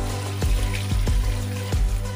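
Background music with a steady beat, and water pouring onto dried hibiscus leaves in a bowl under it.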